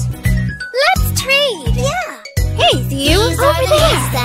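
A child's voice speaking in an animated, swooping sing-song over upbeat children's music with a bass line.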